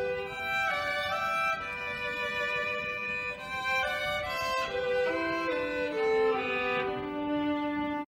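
Violins playing a slow melody in long held notes, stepping down to a lower held note near the end, where the music cuts off suddenly.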